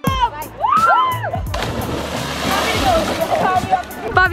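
Swimmers shouting and whooping in rising and falling voices. From about a second and a half in, a burst of splashing water runs under them as someone jumps from the rocks into the lake.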